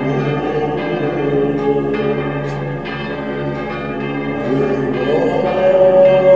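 Church bells ringing over Orthodox chant: a low held drone under a melody voice that slides up to a new held note about five seconds in.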